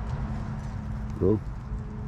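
A man's short wordless vocal sound about a second in, over a steady low hum.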